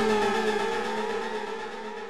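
Electronic music with the beat dropped out: several synthesizer tones glide slowly in pitch, some rising and some falling, fading away.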